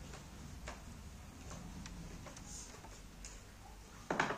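Faint, irregular small clicks and taps as hands handle a Bluetooth audio module board and the amplifier's front panel while fitting it.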